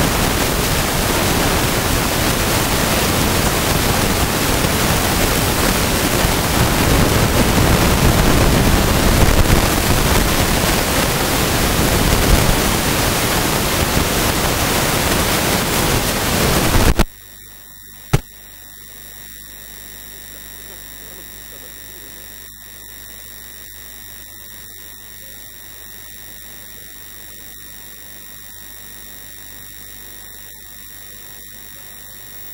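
Loud, even static hiss that cuts off suddenly about seventeen seconds in. A faint steady electrical hum remains, with a single sharp click about a second later.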